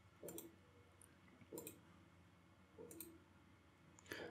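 Three faint computer mouse clicks, about a second and a half apart, over near silence.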